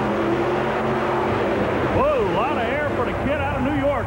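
Two monster truck engines running hard under racing throttle, a steady mechanical din under a loud haze of noise; a man's voice comes in about two seconds in.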